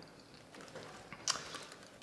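Faint handling sounds of a DSLR camera hanging on a double leather harness strap, with one small sharp click a little past halfway.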